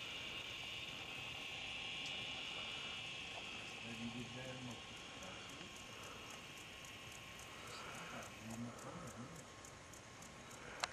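Faint outdoor ambience: a steady high-pitched hum that fades out about eight and a half seconds in, with a soft, fast ticking above it in the second half.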